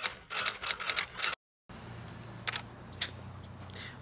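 Rapid typewriter-style key clicks, about eight in just over a second, then a short dropout. After it comes faint steady background noise with a few single clicks.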